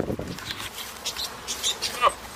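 A goat's fur and muzzle rubbing against the camera, fading within about half a second, then a few short clicks and rustles, three of them close together near the end.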